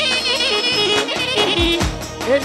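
Live Romani wedding orchestra playing dance music: a high, heavily ornamented melody line over steady bass notes, with regular drum strokes.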